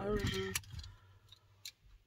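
A woman's brief wordless voice sound, two short steady notes, then a few faint clicks as she handles her eyeglasses.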